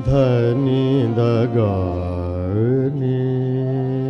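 Male ghazal singer singing a long ornamented line, the voice wavering and gliding down and back up in the middle, over a steady held accompaniment drone.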